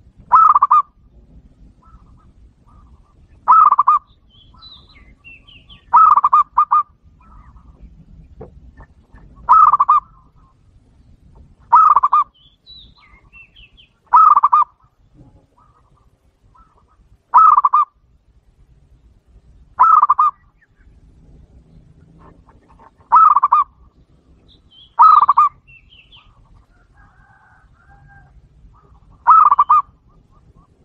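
Zebra dove (perkutut) cooing: eleven short, loud cooing phrases, one every two to four seconds. Faint chirps of other small birds between the phrases.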